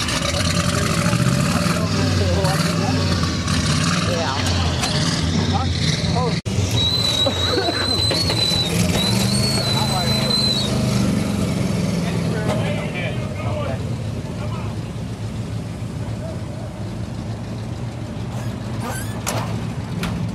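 A vehicle engine running and revving, its pitch stepping up and down. A thin, wavering high tone sounds for a few seconds in the middle.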